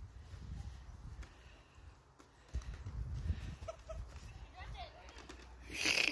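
Faint distant voices over a low rumble on the microphone, with a short, louder cry near the end.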